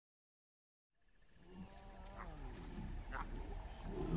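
Silence, then about a second in lion calls fade in: a run of moaning calls that fall in pitch and grow louder toward the end.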